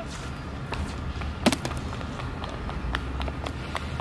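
Outdoor background noise: a steady low rumble, with a few light clicks and one sharp knock about a second and a half in.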